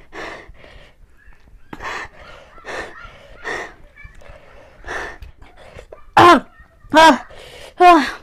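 A young woman coughing repeatedly from the burn of an extremely hot Jolo chip: several short breathy coughs and throat-clearings, then three loud voiced coughs with a falling pitch near the end.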